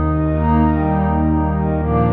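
Yamaha reface DX FM synthesizer played live: held chords on a pad patch, changing to a new chord near the end.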